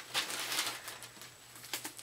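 Paper wrapping and a small plastic bag being handled by hand, rustling and crinkling, with a few light clicks near the end.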